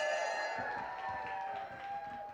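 The last held chord of an oompah duo's accordion and saxophone rings on and fades out. Scattered claps and cheers come from a beer-hall crowd.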